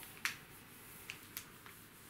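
A few faint, short clicks and light taps from fingers handling the embossed cover of a paper tour pamphlet.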